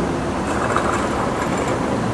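Steady low background rumble with an even hiss, with no distinct event standing out.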